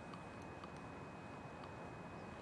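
Quiet background noise: a low steady hiss with a thin, faint steady high tone and a few faint ticks.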